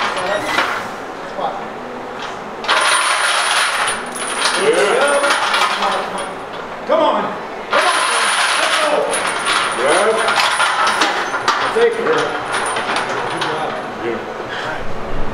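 A barbell loaded with plates and hanging chains being squatted from a monolift rack: the chains and plates jangle and clank as the bar moves, in two long spells starting about three and about eight seconds in. Spotters' shouts ride over the clanking.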